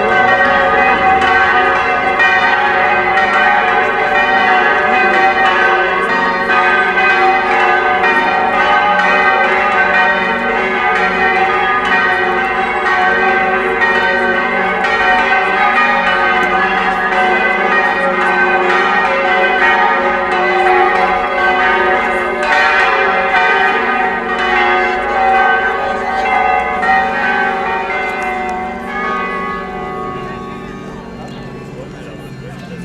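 Church tower bells ringing, a dense, steady peal that slowly dies away near the end.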